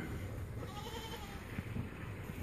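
A goat gives one faint bleat about a second in, lasting about half a second, over soft handling noise.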